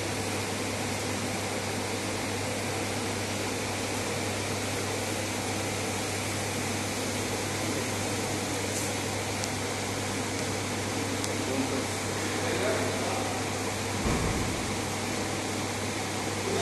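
Steady background hum and rushing noise, like a ventilation or air-conditioning unit, with a low mains-type hum underneath; faint voices come in near the end.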